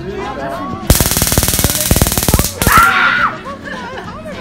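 Handheld stun gun (taser) sparking with a loud, rapid crackle for about a second and a half, starting about a second in, then a shorter second burst with a person yelling over it.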